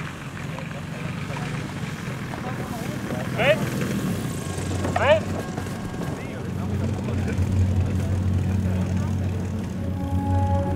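Steady drone of a distant propeller-driven model aircraft engine, growing louder in the second half. Two short falling-pitched, whistle-like calls stand out about three and five seconds in.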